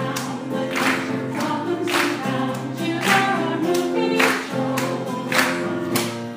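A choir of older adults singing with accompaniment: held notes from many voices over a steady beat that strikes about once a second.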